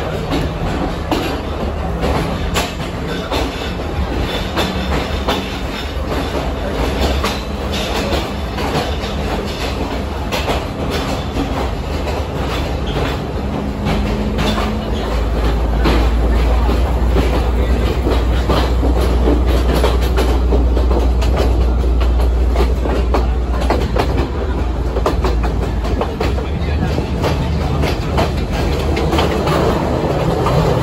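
Diesel passenger train rolling out of a station, heard from on board: wheels clicking over rail joints and points over a steady low engine drone. The drone deepens and grows louder for several seconds in the middle, where the train passes an idling diesel locomotive.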